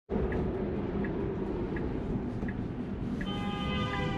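Tesla cabin road noise with the turn signal ticking about every 0.7 s. A little over three seconds in, a following car's horn starts and is held steadily, blown because the blinker came on too late.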